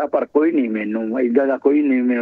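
Speech only: a person talking without a pause.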